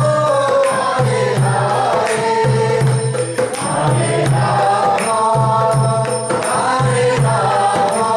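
Hindu devotional kirtan: a male voice singing a melodic chant, with small hand cymbals striking a steady beat about two or three times a second over a low sustained drone.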